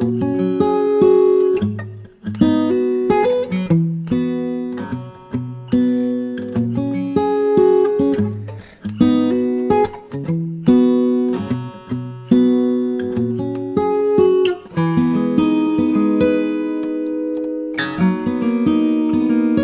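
Background music: acoustic guitar chords played in a steady rhythm, each struck chord ringing and fading before the next.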